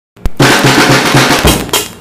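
Music: a drum-kit beat, snare and bass drum in a fast pattern with a repeating low note about four times a second, starting after a brief silence and a click.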